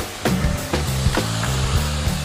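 Background music: a drum beat, about two hits a second, over a bass line.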